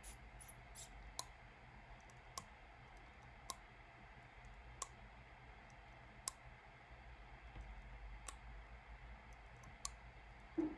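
Computer mouse button clicking: single sharp clicks, about one every one to two seconds, against near silence.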